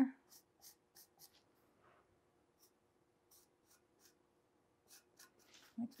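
Felt-tip marker drawing on a strip of 11-gauge steel plate: faint, short scratchy strokes in quick, irregular succession as a curved outline is sketched.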